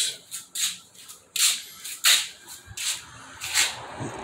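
A run of about eight soft scuffs and rustles, short and hissy, irregularly spaced.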